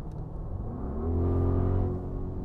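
Audi RS Q8's V8 engine heard from inside the cabin, its note rising as the car accelerates about half a second in, then holding steady and louder.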